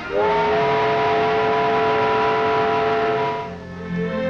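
Steam locomotive whistle giving one long blast: it slides up in pitch as it opens, holds steady for about three seconds, then fades away.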